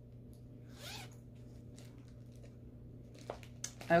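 Zipper of a fabric project bag being pulled open: one short rising zip about a second in, followed by a few faint clicks.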